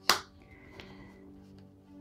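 A single sharp tap right at the start, then soft background music with sustained tones.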